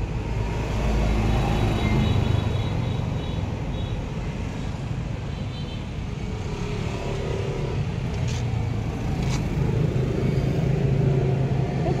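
Steady low engine rumble, with two faint clicks about eight and nine seconds in.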